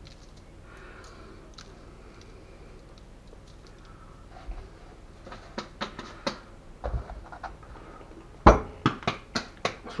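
Faint kitchen room tone, then clicks and taps of seasoning containers being handled on a kitchen counter, with one sharp knock about eight and a half seconds in followed by a quick run of small clicks.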